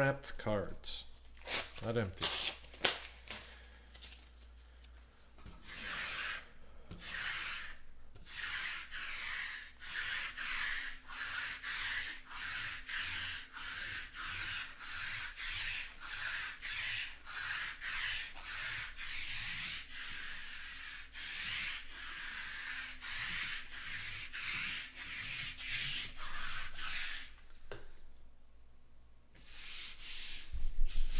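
Sticky lint roller rolled back and forth over a cloth table mat, a run of rubbing strokes at about two a second that stops shortly before the end.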